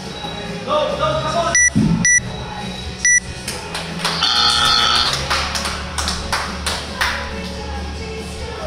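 Gym workout timer giving three short beeps in the final seconds of the countdown, then a longer, louder tone about four seconds in that marks the end of the workout, over background music.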